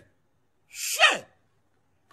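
A man's single short vocal outburst: a breathy rush of air, then a voiced cry that falls sharply in pitch, lasting about half a second and starting just under a second in.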